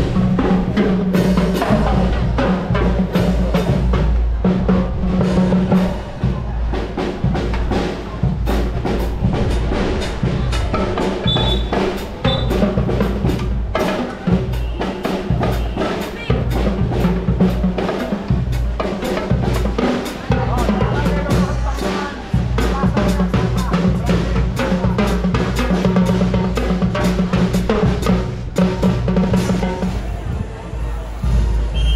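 School marching band playing: snare, tenor and bass drums with cymbals keep a steady, busy beat under held notes from saxophones and low brass.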